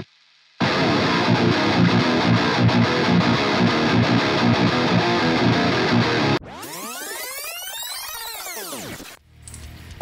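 Distorted electric rhythm guitar riff, reamped through the high-gain channel of a Victory The Kraken valve amp with an Xotic BB Preamp in front, starting about half a second in. Near six and a half seconds in it gives way to a quieter sweeping sound that rises and falls in pitch, which stops shortly before the end.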